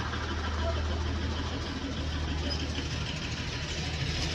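An engine idling steadily, a low even hum that does not change.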